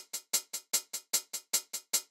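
A single sampled hi-hat looping in a programmed pattern, about six hits a second, every other hit quieter. The alternating soft hits are the same hi-hat turned down to give the loop a groove.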